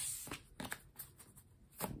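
A deck of tarot cards being handled and shuffled: a brief sliding rustle at the start, then a few light card snaps.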